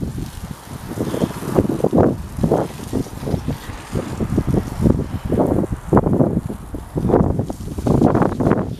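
Wind buffeting the microphone in rapid, irregular gusts.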